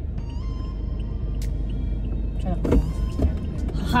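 Steady low rumble of a car's cabin, with faint background music over it and a brief stir of sound about two and a half seconds in.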